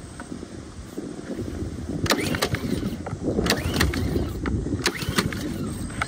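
Honda small engine on a pressure washer being pull-started on choke, in several spells of cranking with clicks, without catching: it won't start even on fresh fuel after the stale gas was drained.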